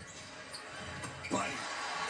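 Basketball being dribbled on a hardwood arena court over steady arena background noise, with a voice coming in a little past halfway.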